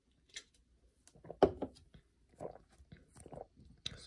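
Trading cards being handled: a few soft, short rustles and taps of card stock, the strongest about one and a half seconds in.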